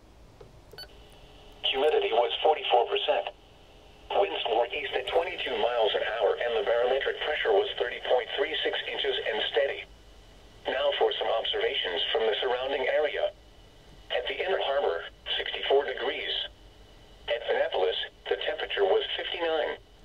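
Marine weather forecast broadcast playing from the speaker of a Uniden UM380 VHF marine radio tuned to weather channel 2. A voice, thin and narrow-sounding, reads the forecast in phrases separated by short pauses, starting nearly two seconds in.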